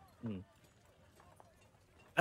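A man's short "hmm", then near silence.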